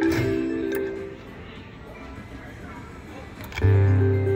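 Three-reel slot machine playing its electronic reel-spin melody, which stops after a click about a second in, leaving casino background chatter. Near the end the melody starts again suddenly and loudly, with a deep bass tone, as the reels spin again.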